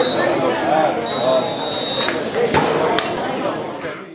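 Voices of players and spectators around a football pitch, with a referee's whistle blown twice: a short pip, then a blast of about a second. Two sharp knocks come near the end.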